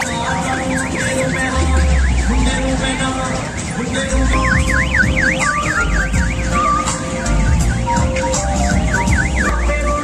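An electronic siren warbling rapidly up and down, about five sweeps a second, in three spells: near the start, around the middle, and near the end. It sits over loud amplified music with a heavy bass beat.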